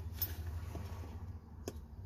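Faint light metallic ticks of pliers working a steel retaining ring onto a starter motor's shaft, with one small click near the end, over a low steady hum.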